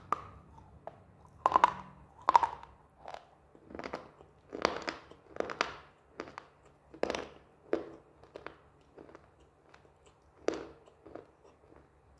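Close-miked crunching and chewing of a dry, roasted slate-clay piece in the mouth: about a dozen separate crisp crunches at an irregular pace, loudest in the first few seconds, thinning out toward the end.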